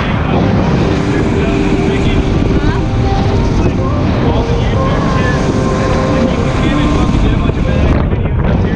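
Outboard-powered boat running at speed on open water: heavy wind buffeting on the microphone over the outboard engine and the rush of water and spray from the hull and wake.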